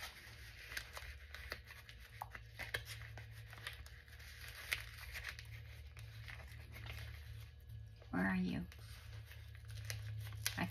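Paper and card of a handmade junk journal being handled: scattered light rustles, crinkles and taps. A short vocal sound comes about eight seconds in.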